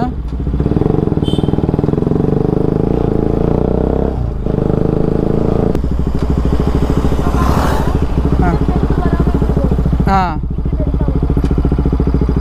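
A Bajaj Pulsar RS200's single-cylinder engine running as the motorcycle rides along. The engine note breaks briefly about four seconds in and drops in pitch just before six seconds in.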